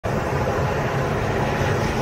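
2012 Audi A5's engine accelerating under throttle out of a corner, revs climbing from about 2,200 to 3,400 rpm, heard from inside the cabin along with road noise.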